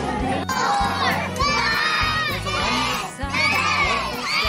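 A large group of young children shouting and cheering together in loud, repeated bursts, beginning about half a second in.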